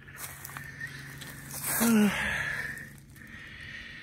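A man's breathy 'uh' about halfway through, inside a brief rush of hiss that swells and fades, over a faint steady low hum.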